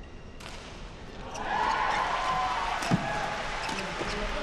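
Badminton doubles rally: sharp racket strikes on the shuttlecock and shoes squeaking on the court floor, growing busier about a second and a half in.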